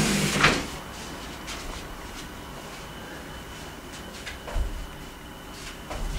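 A mini trampoline being shifted across a carpeted floor, a short scraping rush in the first half second. Later, a few dull thuds of bare feet landing jump lunges on carpet.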